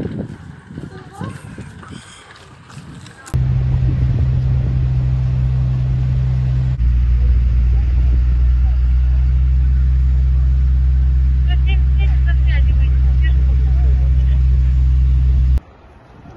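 A loud, steady low drone of an idling vehicle engine. It starts abruptly about three seconds in, deepens a few seconds later and cuts off just before the end.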